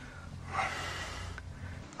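A man's single breathy gasp, as when waking with a start from a bad dream, over a faint low hum.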